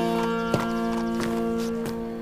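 Horse hooves clip-clopping on stone paving: a few uneven strikes, growing fainter as the horse moves off, over background music with held chords.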